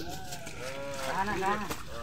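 Men's voices calling out in drawn-out, wavering shouts, the louder call coming about a second in, over a low steady background noise.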